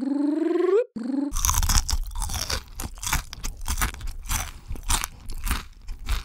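A rising open-mouthed "aaah" in a cartoon voice, then, from just over a second in, close-miked ASMR crunching and chewing of flaky crunchy food such as a croissant, in a dense run of irregular crackles.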